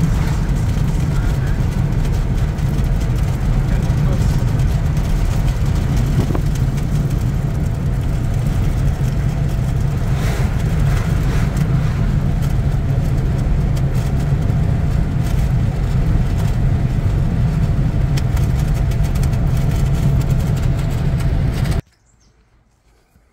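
Steady road noise from inside a moving car's cabin: engine and tyres running at a constant cruising speed, a loud, even low rumble. It cuts off abruptly near the end.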